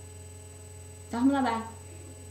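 Steady low electrical hum on the recording, with a faint high whine, and a brief voice sound from one of the young women, about half a second long, a little over a second in.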